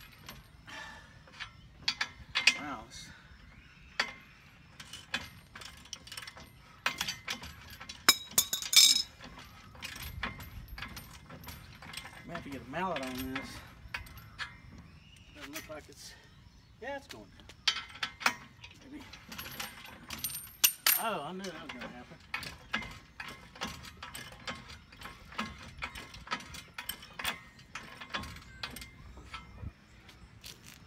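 Socket ratchet clicking in short spurts and metal tools clinking against the steel swing-arm frame while the bolt joining the swing-away arm to the carrier is tightened, with a few louder metallic knocks.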